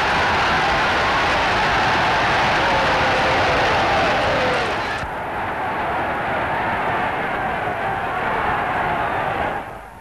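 A large fight crowd shouting and cheering in a dense, continuous roar. About halfway through, the sound cuts abruptly to a duller, slightly quieter crowd noise.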